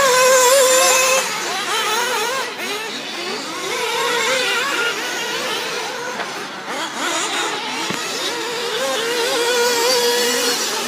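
Several 1/8-scale nitro RC buggies racing, their small two-stroke glow engines sounding together in a high pitch that keeps rising and falling as the drivers open and close the throttle around the track. A steady held engine note stands out in the first second and again near the end.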